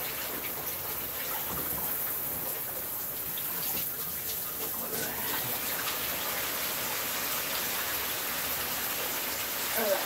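Steady rushing hiss with no distinct events, water-like in character.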